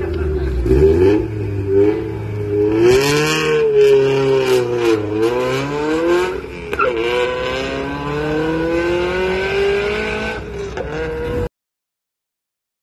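Toyota 86 engine revving at the start line, then accelerating hard away through the gears, its pitch climbing and dropping at upshifts about five and seven seconds in. The sound cuts off suddenly near the end.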